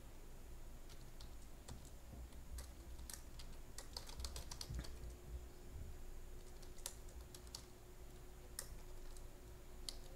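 Computer keyboard typing: faint, irregular keystrokes, in a quicker run a few seconds in and scattered taps before and after.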